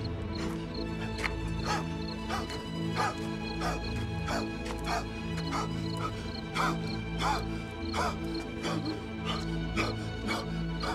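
Film score of sustained low tones, over which a man gasps for breath in short, labored heaves, about one or two a second.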